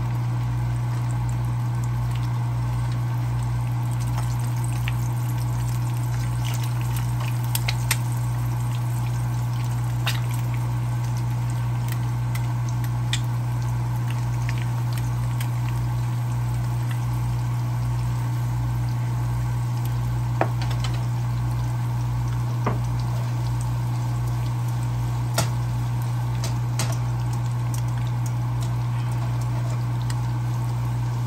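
Yukon potato chunks frying in oil in a nonstick skillet, a steady sizzle with a few sharp clicks of the spatula against the pan. Under it runs a loud, steady low hum.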